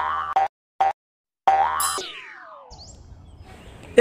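Short cartoon-style intro jingle: a few quick pitched notes, then a rising swoosh and a long falling glide, fading to faint low noise for the last second or so.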